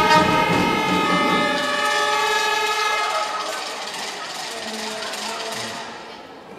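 Music over the hall's speakers ending on a long held chord that fades away over the first few seconds, leaving a low murmur of voices in the hall.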